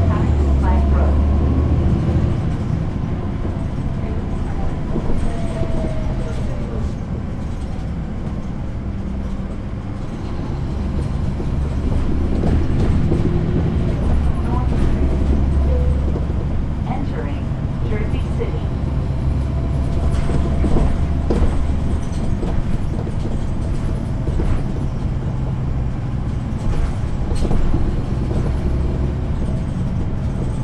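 Caterpillar C13 diesel engine of a 2009 NABI 416.15 transit bus, heard from the rear seat near the engine, with a deep, steady rumble that swells under load and eases off a few times, along with light rattles from the bus body.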